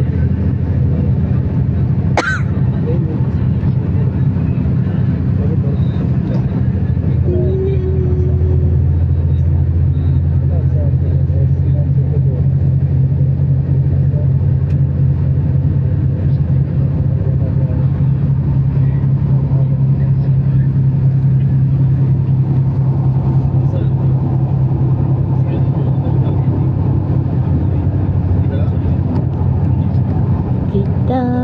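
Steady low drone of engine and road noise inside a moving vehicle at highway speed, with a single sharp click about two seconds in.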